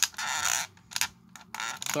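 Plastic arm joint and piston of an old Masterpiece Grimlock figure creaking and scraping as the arm is worked. There is a sharp click at the start and a few small clicks near the end.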